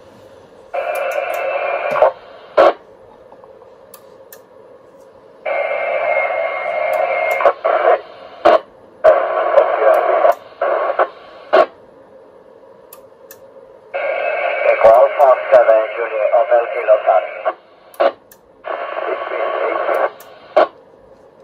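FM amateur transceiver receiving the ISS voice repeater downlink: about five short transmissions of noisy, hard-to-understand speech, each cutting in and out abruptly with a squelch burst as it closes.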